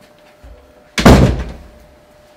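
A flat's front door slammed shut once, about a second in, its boom dying away over half a second.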